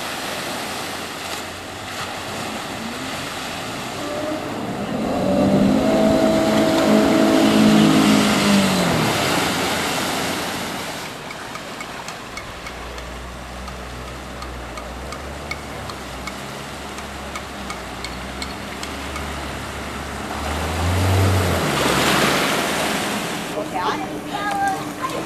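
A four-wheel drive's engine running as the vehicle wades through a deep river crossing, with water rushing and splashing around it. The engine revs up and back down once about a quarter of the way in, then settles to a low rumble.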